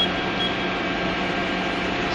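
Steady hum of running machine-shop machinery: a constant low tone over an even noise, with no cutting or impacts.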